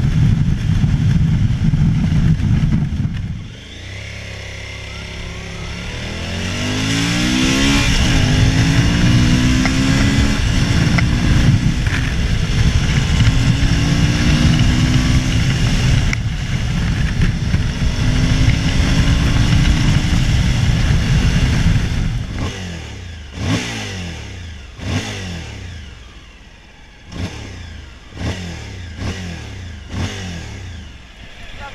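Suzuki DL1000 V-Strom's V-twin engine on the move with wind noise. It accelerates through the gears, its pitch rising in steps and dropping at each shift, and then slows, with several short throttle bursts near the end.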